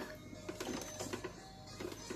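Stand mixer running faintly on its lowest speed, its dough hook kneading dough in a stainless steel bowl, over soft background music.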